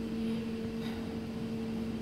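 Steady machine hum: a constant low drone with an even hiss over it, the background noise of the room's equipment.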